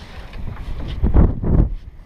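Wind buffeting an action-camera microphone in irregular low rumbles, loudest about a second in.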